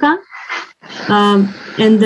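A woman speaking English, hesitating with a long, drawn-out, level-pitched filler sound about a second in.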